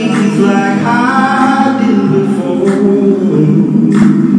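Vocal music: singing voices holding long notes.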